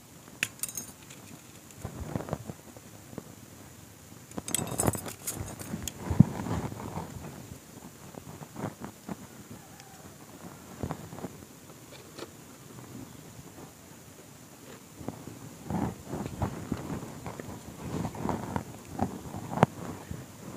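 Hands tying a black sheet wrapped around a potted tree's soil: irregular rustling, crinkling and sharp clicks, busiest about five seconds in and again over the last few seconds.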